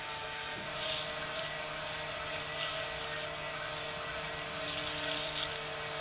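Small electric motors of a miniature conveyor-belt grain-cleaning machine running steadily with a whine, over a constant hiss, with a few brief surges in the hiss.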